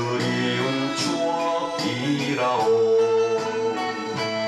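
A man singing a Korean song into a microphone over a band accompaniment, with steady percussion strikes.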